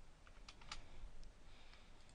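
A few faint computer keyboard keystrokes, the two clearest close together about half a second in.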